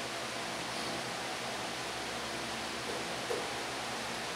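Steady background hiss of the room and recording, with one faint short sound a little past three seconds in.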